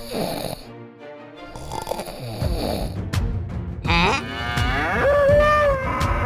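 A snoring sound effect twice in the first two seconds. Background music then comes in, and near the end a long cow-like moo rises and then holds.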